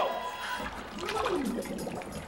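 Water sloshing and splashing in a tank as a head is plunged in and moves about underwater, over background music.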